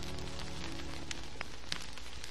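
Quiet background music bed with held low notes that fade out about halfway through, over a steady hiss with a few scattered faint clicks.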